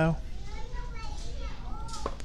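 Children's voices chattering faintly in the background, after the tail of a woman's sentence right at the start.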